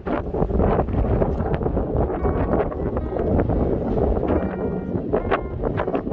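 Strong gusty wind buffeting the camera microphone: a loud, uneven low rumble.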